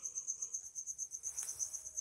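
A cricket chirping: a steady, fast-pulsing high trill, heard faintly in a pause in speech.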